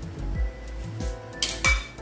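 Background music with a steady beat; near the end a metal ladle clinks twice against an aluminium pan, the second clink louder and ringing briefly.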